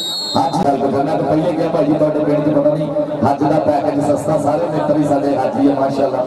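A man's voice in long, drawn-out phrases, typical of kabaddi match commentary, with crowd chatter behind it.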